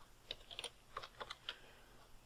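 Computer keyboard keystrokes: a quick, irregular run of about seven faint key clicks as a search is typed.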